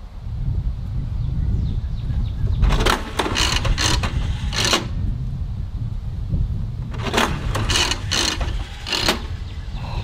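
Toy slot machine going through its spin: a steady low whir with two runs of short, bright jingling bursts, about four in each, near the middle and again near the end.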